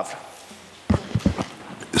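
A quick run of about five knocks, starting about a second in and lasting half a second, the first the loudest, over faint room hiss.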